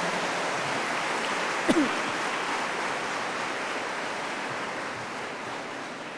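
Large congregation applauding, a dense even clatter of many hands that fades away gradually. A brief voice rises over it about two seconds in.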